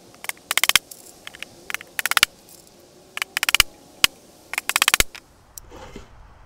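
Weathered wooden trap box being handled: several short bursts of rapid clicking and rattling, wood knocking and scraping against wood, with a few single knocks in between.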